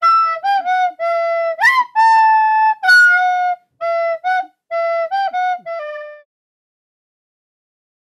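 A solo flute-like melody of short held notes, with one quick upward slide near the start, stopping about six seconds in.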